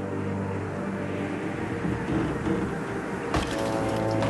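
Ominous dramatic score music with sustained low tones, broken by a single sharp hit about three and a half seconds in.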